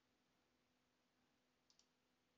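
Near silence: faint room tone with a low steady hum, and a quick, faint double click near the end, a computer mouse click.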